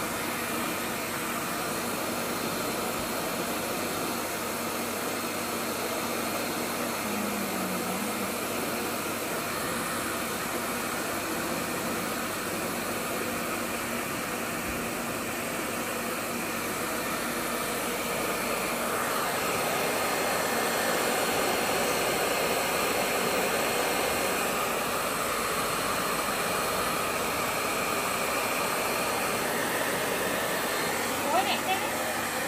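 Hand-held hair dryer blowing steadily, a little louder from about two-thirds of the way through.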